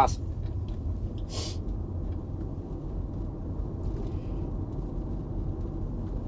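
Steady low road and tyre rumble inside a Tesla electric car's cabin as it pulls away slowly across an intersection and gathers speed. There is a short hiss about a second and a half in.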